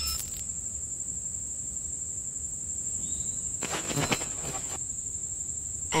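Electronic sound design of a stage performance: a steady high-pitched tone held without a break, like an insect's drone, over a low flickering rumble. A short click opens it and a brief noisy burst comes about four seconds in.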